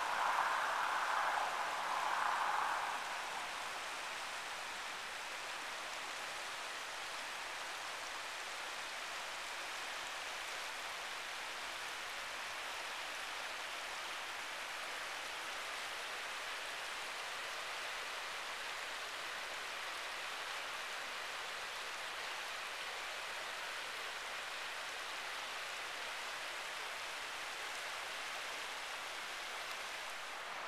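Steady rush of a shallow creek flowing over rocks, a little louder for the first few seconds.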